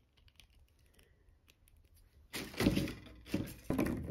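About two seconds of near silence, then a second or so of clicking and clattering with a shorter rattle after it: a hard plastic action figure and its accessories being handled and picked up off the table.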